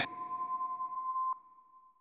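Electronic end-card sound-logo tone: two steady pitches held together, cut by a short click just over a second in, after which the higher tone rings on faintly and fades away.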